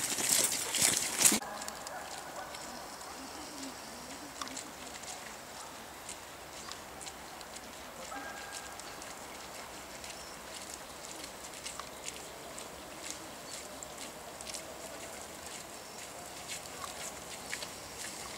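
Footsteps of people and dogs on a wet gravel forest track: a scattering of short, light crunching ticks over a low steady background. A loud rush of noise fills the first second or so, and faint distant voices come through now and then.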